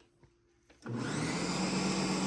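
Ninja countertop blender motor starting up about a second in and spinning up to a steady whir, blending a thick puppy mush of pumpkin and milk replacer.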